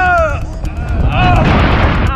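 Bungee jumper yelling in freefall: two long shouts, the first dropping in pitch and fading about half a second in, the second about a second later. Under them a steady low rumble of rushing wind buffets the microphone.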